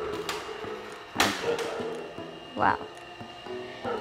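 Sliding glass door pushed open, with a sharp knock about a second in as it reaches its stop, over quiet background music.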